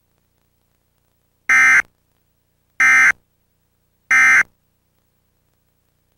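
Emergency Alert System end-of-message data tones: three short, harsh digital buzzes, each about a third of a second long and about 1.3 seconds apart. They signal the close of the severe thunderstorm warning.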